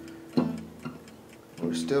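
A single low guitar note sounds about half a second in and rings away, over a faint steady ticking, most likely the mechanical darkroom timer used to time the lesson.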